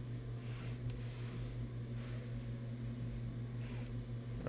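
A steady low hum, even and unchanging, with no other distinct sound.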